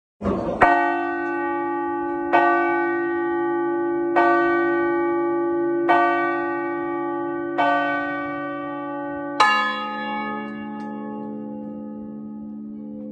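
Large bronze church bells of Crema cathedral's Crespi peal, cast in 1753, rung swinging by hand: six strong strokes about two seconds apart, each leaving a long ringing hum. The last stroke, near the end, sounds a lower note.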